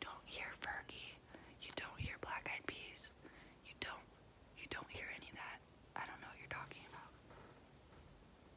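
A woman whispering close to the microphone, with a few sharp clicks between the words.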